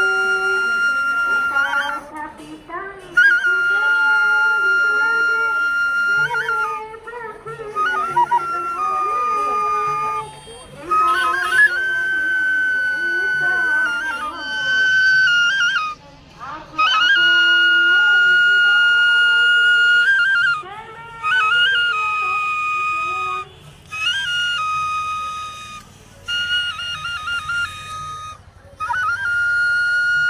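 Bansuri (side-blown bamboo flute) played solo: a melody of long held notes joined by quick ornamental turns, with short breaks between phrases.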